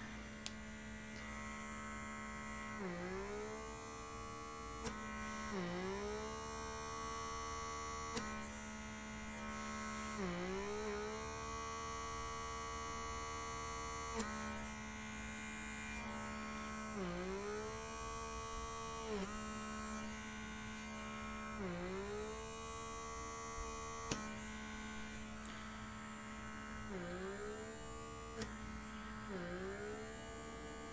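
Small electric motor of a handheld blackhead (pore) vacuum running with a steady hum while its suction tip is held to the nose. Every few seconds its pitch sags and climbs back within about a second, and a few faint clicks come in between.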